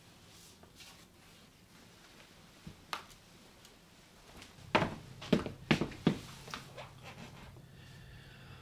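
Footsteps on a wooden floor: five or six sharp steps about two a second, trailing off into lighter knocks, after a few seconds of faint room tone with a small click or two.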